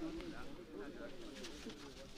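Faint stadium ambience: a low murmur of many distant voices from the crowd and sidelines.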